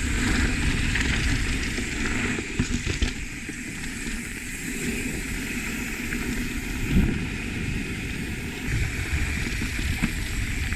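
Wind buffeting the camera microphone over the rolling of mountain bike tyres on a fast dirt singletrack descent, with a few short knocks from bumps in the trail, the strongest about seven seconds in.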